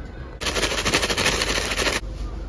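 Paper bag of shaker fries and seasoning being shaken hard: a loud, fast paper rattle that starts about half a second in and cuts off suddenly.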